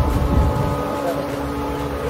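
Several Honda outboard motors on a speedboat running steadily at cruising speed, a loud low engine drone with a few steady tones over it.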